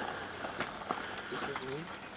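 Footsteps crunching on gravel and a loaded wheelbarrow being set down, with scattered knocks and clatters from the wheelbarrow and its load of empty cans.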